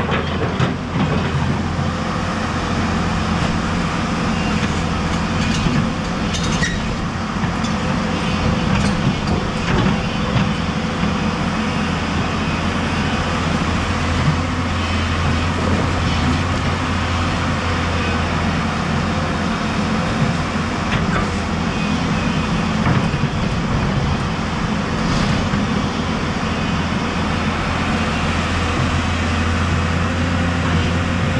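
Hyundai 210 crawler excavator's diesel engine running steadily under load as the machine works and moves on its tracks, with rushing river water beside it.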